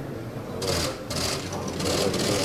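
Press photographers' camera shutters firing in rapid bursts, three short volleys of fast clicking about half a second apart, over a murmur of voices.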